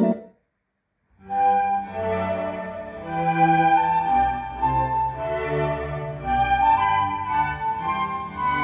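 Classical music led by a violin with bowed strings and piano, played back through a pair of Coral three-way floor-standing loudspeakers. It starts about a second in, after a short silent gap.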